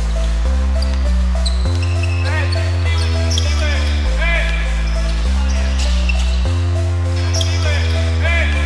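Background music with a steady bass line of held notes changing about every second, and a singing voice over it.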